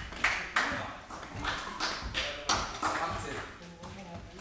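Table tennis ball making a few sharp pinging clicks as it bounces, between points of a table tennis match, with voices in the hall.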